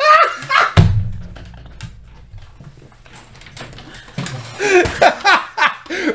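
Two people laughing hard, with a heavy thump about a second in followed by a brief low rumble, as of a body knocking against furniture. The laughter falls away, then picks up again near the end.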